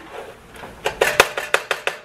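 Wooden spoon stirring crisped rice cereal through melted marshmallow in a pot: a soft rustle, then a quick run of about eight sharp clicks and knocks of the spoon against the pot in the second half.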